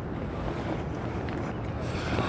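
Steady low rumble of wind buffeting the microphone outdoors, with no call from the hawk.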